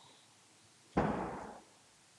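A single loud slam about a second in, from the squash court's glass door being shut. It rings on in the court's echo for about half a second.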